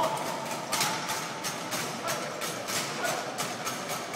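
Drill team's feet stepping and stomping in unison on a concrete floor, a steady beat of sharp strokes about three to four a second that begins a little under a second in, echoing in a large hall.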